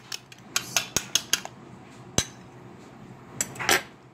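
A metal utensil clinking against a white bowl in quick, rapid strokes as egg white and milk are stirred together. The clinking stops about a second and a half in, and is followed by a single clink a little after two seconds and a short clatter near the end.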